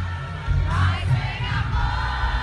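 Live band music with a heavy bass, with a woman singing along close to the microphone over the crowd, out of tune by her own account.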